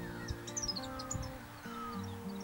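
Small bird calling: a quick run of high chirps about half a second in and a few short falling whistles, over soft acoustic guitar background music.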